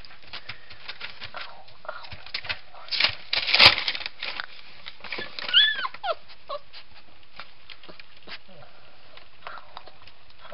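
Weimaraner puppies at play: scattered small clicks and scuffling throughout, a loud noisy scuffle about three seconds in, and a short high whine that falls in pitch about five and a half seconds in.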